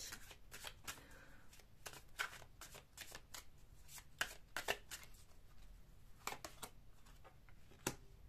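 A deck of oracle cards being shuffled by hand, a faint, irregular run of flicks and clicks as the cards slide and tap together.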